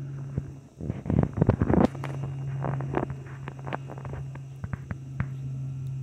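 Puppy gnawing a hard rubber ball: scattered clicks and crackles, with a loud cluster of knocks about a second in, over a steady low hum.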